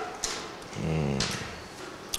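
A young man's brief, quiet hesitation hum, a drawn-out 'mm', about a second in, between words while he thinks what comes next.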